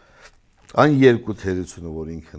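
A man speaking, starting under a second in, after a brief faint rustle.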